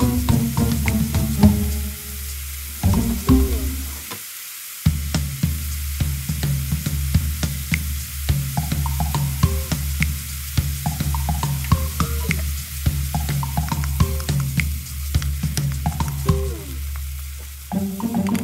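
Mixed vegetables sizzling in a wok as they fry, under background music.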